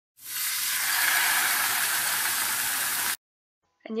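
A steady, high-pitched hiss that swells in just after the start, holds for about three seconds and cuts off suddenly.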